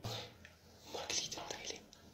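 Faint, whispered speech: a brief sound at the start, then a few soft, breathy syllables about a second in.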